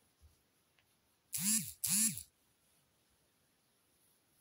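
A woman's voice: two short voiced sounds, a word and a laugh, each rising and falling in pitch, starting a little over a second in.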